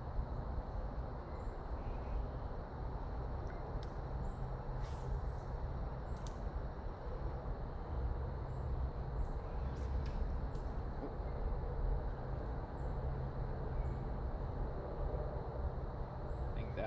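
Steady outdoor ambience with a low rumble, over which small birds give short high chirps about once a second, with a few sharper calls near the middle.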